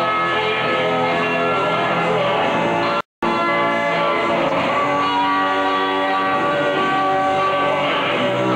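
Live rock band playing, with electric guitars and drums, recorded onto a worn, poor-quality VHS tape. The sound drops out completely for a split second about three seconds in.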